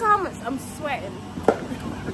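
High-pitched voices calling out briefly, one falling call at the start and a rising one just before a second in, with a single sharp knock about one and a half seconds in.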